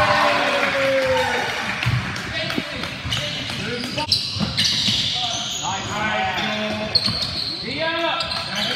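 Basketball game on a hardwood gym floor: the ball bouncing, short sneaker squeaks, and players and spectators calling out.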